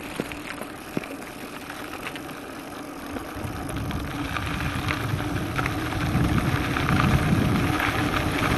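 Mountain bike rolling down a loose dirt and gravel road: tyre noise on the gravel, with a few sharp knocks and rattles from the bike early on. Wind buffets the handlebar-mounted microphone and grows louder from about three seconds in.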